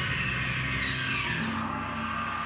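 Soundtrack music in a quieter stretch: sustained low drone tones under a noisy, scraping texture, with a new held note coming in near the end.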